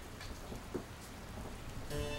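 Steady, even hiss with a few faint ticks; music comes in right at the end.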